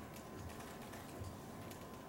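Faint, irregular clicks and taps over quiet room tone.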